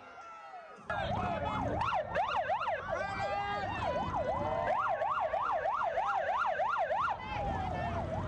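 Police siren sounding a fast yelp that starts about a second in, its pitch sweeping up and down several times a second, with a few slower sweeps in the middle. Near the end it winds down in a long falling tone, over the low rumble of crowd and traffic.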